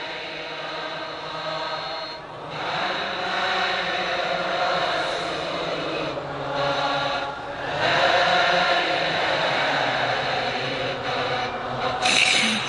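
A large congregation of men chanting dhikr together in unison, in long sustained phrases broken by brief pauses for breath.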